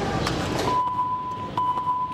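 A steady, high electronic beep starts about two-thirds of a second in, over low background noise. It breaks off briefly around a second and a half and resumes, with a few faint clicks.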